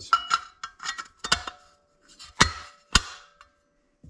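Metal Boost Doc oil splash plate clinking and knocking against the studs of a Nissan RB25DET NEO cylinder head as it is slid down over them into place: a run of sharp metallic taps, some ringing briefly, the two loudest knocks about half a second apart in the second half.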